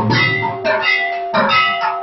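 Temple aarti music: metal bells and percussion struck in a fast, steady rhythm, about four to five strikes a second, with a ringing tone held under the beats.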